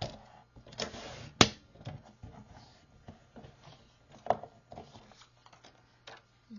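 Fiskars sliding paper trimmer cutting a strip of patterned paper, with clicks and knocks from the cutting head and the paper being handled. A short scraping stretch comes about a second in, followed by a sharp click, the loudest sound; another click comes about four seconds in.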